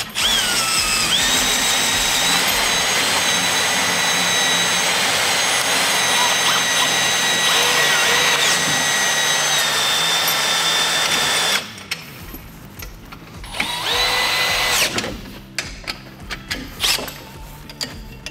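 Cordless drill driving a bolt on a canopy leg clamp: it spins up, runs steadily with a high whine for about eleven seconds, stops, and then runs again in a short burst near the end.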